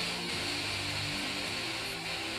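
Background guitar music over a steady hiss of air being let out of the rear suspension airbags as they deflate.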